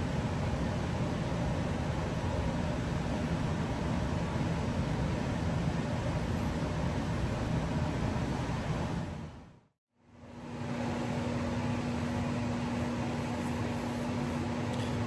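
Steady machine-like background noise with no distinct events, fading out about two-thirds of the way through. After a brief silence it returns with a steady single-tone hum.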